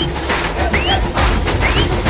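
Loud music with a heavy bass beat and drum hits, and a short rising whistle-like note that repeats about once a second in time with the beat.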